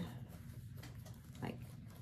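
Faint rustling of a large piece of cross-stitch fabric being handled and unfolded, with one short spoken word about a second and a half in.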